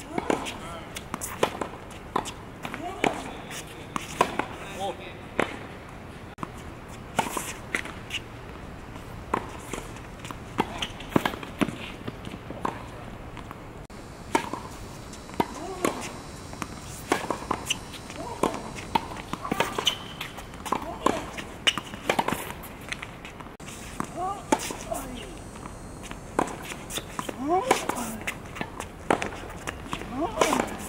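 Tennis rally on a hard court: repeated sharp pops of racket strings striking the ball, with the ball bouncing on the court and footsteps between shots.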